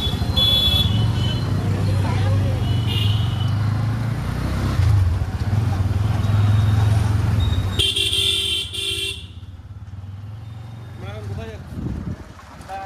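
Motorcycle engine running with road noise while riding. A vehicle horn honks twice in the first seconds and again, longer, about eight seconds in. The engine noise drops off sharply about nine seconds in.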